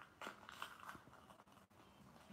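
Near silence with a few faint clicks and soft rustles.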